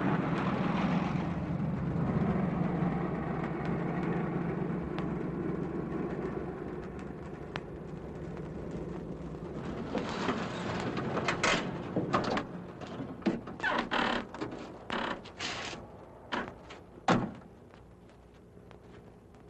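A 1940s sedan's engine running as it drives up and slows, fading away over the first several seconds. Then a string of clicks and knocks as the car doors are opened and people climb out, ending with one solid car door shut near the end.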